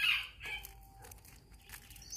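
A rooster crowing, the call cutting off a fraction of a second in, followed by faint crinkles and clicks of a plastic bag being handled.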